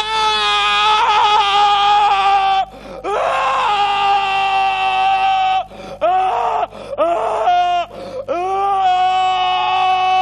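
A man screaming in high, drawn-out wails, acting out a scream of horror: two long screams of about two and a half seconds each, two short ones, then another long one near the end.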